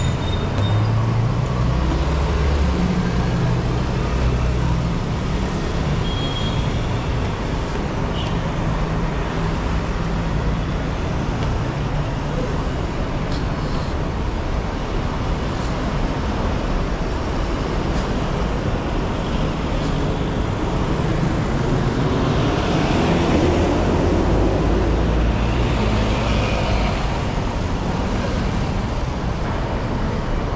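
Steady road traffic noise from a busy multi-lane street, with cars and buses passing. Heavier vehicle engines swell near the start and again a little past twenty seconds in.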